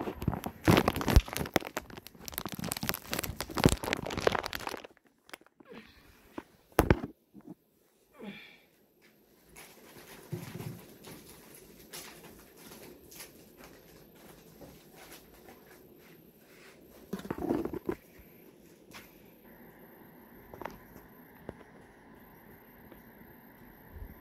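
Plastic mushroom grow bags crinkling loudly as they are handled for about five seconds, then mostly quiet with a few scattered knocks and rustles.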